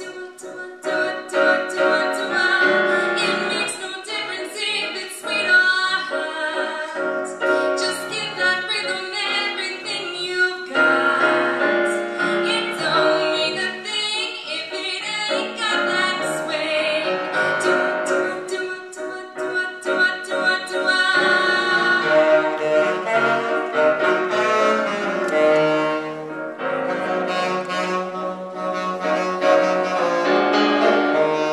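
Small jazz combo playing a swing tune: a woman sings into a microphone over piano, double bass and drums with cymbal ticks, with saxophone also heard.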